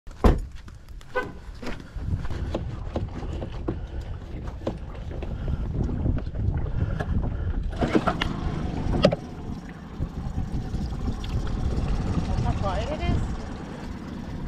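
Small outboard motor on a jon boat running at idle, a steady low rumble that sets in about two seconds in after a few sharp knocks. It is quiet enough to be called "quiet". Two louder knocks come around eight to nine seconds.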